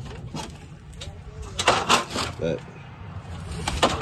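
Wooden pressboard furniture panels knocking and clattering as they are shifted by hand, with a cluster of sharp knocks a little past halfway and another near the end.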